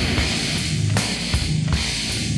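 Death/thrash metal playing: distorted electric guitars over a driving drum kit, with a sharp crash about a second in.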